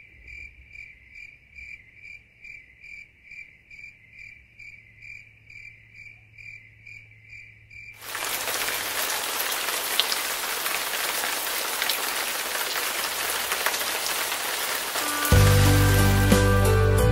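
Toyota SUV's door-open warning chime, a high ding repeating about two and a half times a second. About eight seconds in it gives way abruptly to a steady rain-like hiss, and music starts near the end.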